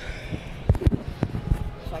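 Handling noise of a phone being moved about in the hand: irregular knocks, thumps and rubbing right on the microphone.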